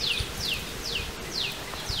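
A bird calling: a short, high note that falls in pitch, repeated evenly a little more than twice a second.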